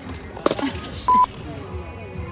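A sharp click, then a single short, steady electronic beep about a second in, over faint background voices.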